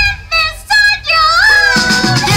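A song with music, sung by a high voice: a few short notes, then a note that rises and is held. The deep backing music drops out under the voice and comes back in near the end.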